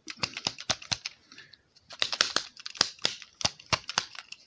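EMI Hi-Dynamic C60 plastic cassette slapped repeatedly against an open palm in different directions: a quick, irregular run of sharp clacks with a short lull partway through. It is being done to loosen hubs stuck from long storage so the tape will turn freely.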